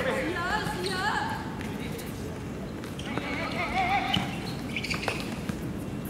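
Footballers calling out to each other across an open court during play, in two spells of shouting, with a sharp knock of a ball being kicked about five seconds in.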